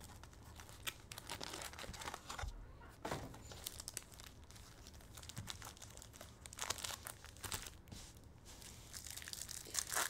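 Foil wrappers of trading card packs crinkling and rustling as they are lifted from their cardboard box and handled, with scattered sharp crackles and a tear as a pack is ripped open near the end.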